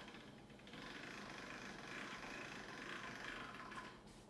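A hand-cranked pasta machine's steel rollers and crank gearing turning, a faint steady whirring, as a sheet of egg pasta dough is fed through on thickness setting two. The sound stops just before the end as the sheet comes out.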